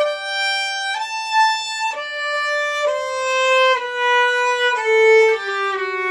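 Violin played with the bow in a slow melody of sustained notes, changing about once a second and stepping downward in pitch toward the end, the last note held with vibrato.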